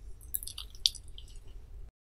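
Close-miked wet chewing of a mouthful of spicy fish roe soup: a string of short squishy mouth smacks and clicks, the sharpest a little under a second in, over a faint low hum.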